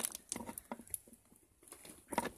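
A few short, soft clicks and taps at irregular intervals, as small plastic toy figures are handled and pushed together.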